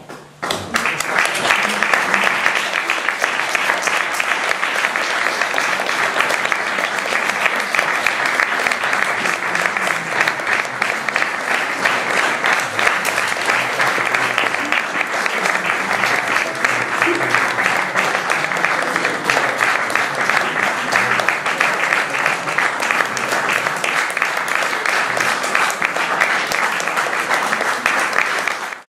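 Audience applauding: a dense, steady clapping that breaks out suddenly about half a second in and keeps going.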